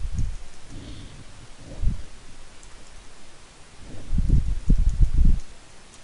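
Typing on a computer keyboard, with faint key clicks and low, dull thuds and rustling, loudest from about four to five and a half seconds in.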